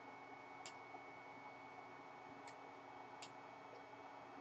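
Faint computer mouse clicks, three spaced out over a few seconds, against a faint steady hiss and thin whine of room noise.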